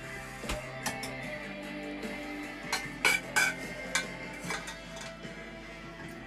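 A metal spoon clinking and scraping in an aluminium saucepan as courgettes are scooped out, a handful of separate clicks over steady background music.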